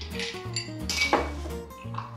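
Ice cubes clinking as they are dropped into a glass tumbler, a few sharp clinks in the first second or so, over light background music.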